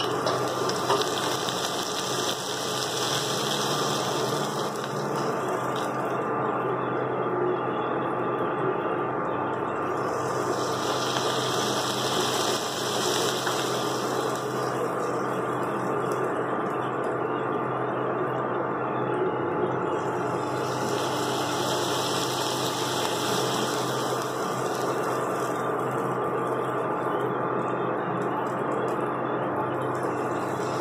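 Prawns, onion and capsicum sizzling in a stainless-steel kadai, a steady frying sizzle with a brighter hiss that swells and fades about every ten seconds.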